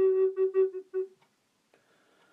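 Solo recorder holding one note, then a few short repeated notes on the same pitch that stop about a second in.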